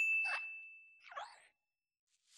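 A single notification-bell ding sound effect, one high clear tone that fades away over about a second and a half, with two soft swishes under it.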